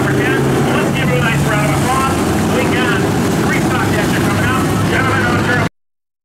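Dirt late model race car's V8 engine idling steadily, with an announcer's voice over the public-address system on top; all sound cuts off suddenly near the end.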